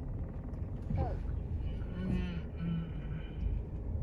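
A car's engine running with a steady low rumble, heard from inside the cabin as the car turns slowly on soft dirt and grass.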